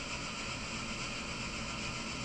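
Steady background hiss with a low hum under it, the room and microphone noise of a pause between sentences; nothing else sounds.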